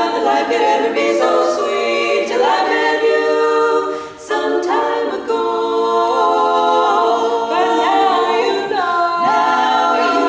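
Women's barbershop quartet singing a cappella in four-part close harmony, holding sustained chords, with a brief break between phrases about four seconds in.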